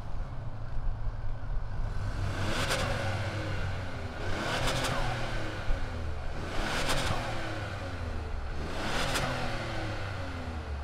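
2020 Ford Escape's 1.5-litre turbocharged three-cylinder EcoBoost engine running and revved four times, about two seconds apart, the pitch rising and falling with each rev.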